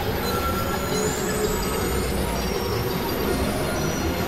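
Experimental electronic noise music: a dense, steady wash of noise with thin high tones sliding upward from about a second in.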